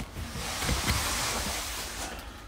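Rustling of comic books being shuffled through by hand, a steady hiss lasting about two seconds with a couple of soft knocks partway through.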